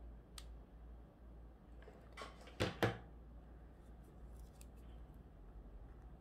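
Scissors cutting a narrow ribbon: a faint snip about half a second in, then a quick cluster of sharp snips between two and three seconds in.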